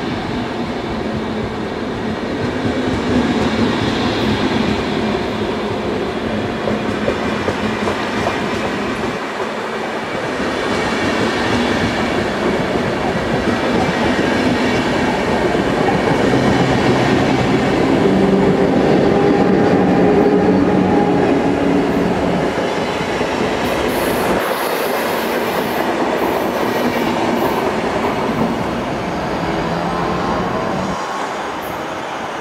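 SBB double-deck intercity train pulling out of the station, its coaches rolling past with steady wheel-on-rail noise, and brief high wheel squeals near the end.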